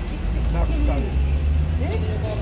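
Low, steady rumble of road traffic on a busy street, heaviest in the second second, with brief fragments of speech over it.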